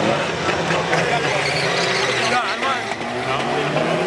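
Two drag-racing cars at the start line, engines revving hard and launching down the strip, the black car spinning its rear tyres in smoke.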